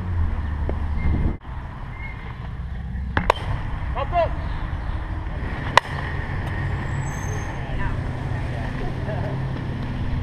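Softball bat hitting a pitched softball: one sharp crack about six seconds in, with a fainter knock a few seconds earlier.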